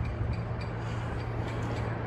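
Steady outdoor background noise with a constant low hum and no distinct event.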